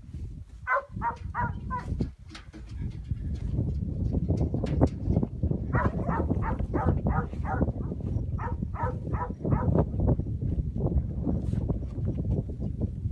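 A quick run of short animal calls from a working dog and the yearling cattle it is gathering, about three calls a second, in a short bout about a second in and a longer bout in the middle, over a steady low rumble.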